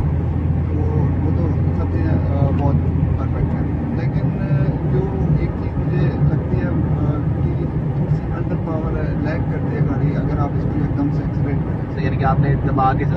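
Cabin noise of a Toyota Vitz 1.0 driving at road speed: a steady drone of its three-cylinder engine and tyres, whose deepest hum drops away about seven seconds in, with people talking over it.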